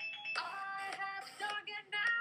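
Music: a sung cover of a novelty pop song, the voice moving in short, quick notes.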